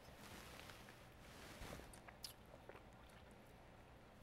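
Near silence, with faint sounds of a man sipping white wine from a glass and working it in his mouth, then a light tap or two as the wine glass is set down on the table.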